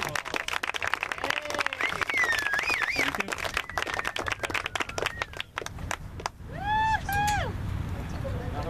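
A small audience clapping, the claps thinning out and stopping about six seconds in. A wavering whistle comes in the middle, and two short high calls come near the end.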